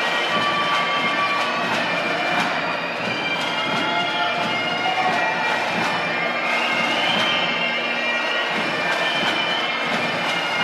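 Bagpipe music for a graduation processional: a steady drone under a melody that steps up and down in pitch.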